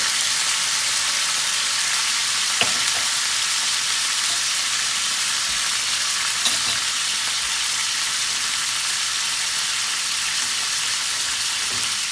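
Food sizzling steadily in hot olive oil: strips of zucchini and bell pepper sautéing in a frying pan, with a second pan of diced chicken frying on high heat. A couple of faint clicks come through about two and a half and six and a half seconds in.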